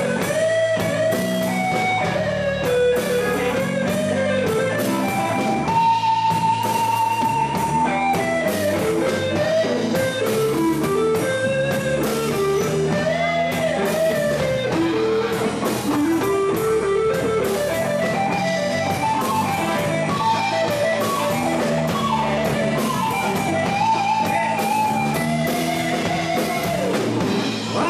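Live blues band in an instrumental stretch: an electric guitar plays a lead solo of bending melodic lines over a drum kit and bass guitar, with one long held note about six seconds in.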